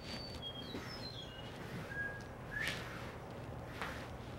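Faint chirping of small birds: a string of short, high whistled notes, several falling in pitch, then a held note. A couple of soft scratchy strokes come through near the end, in keeping with a curry brush being worked over the horse's coat.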